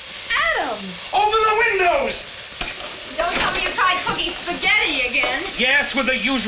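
A man's voice in wordless vocalizing, its pitch sweeping widely up and down, over a faint steady hiss from a steaming pot on the stove.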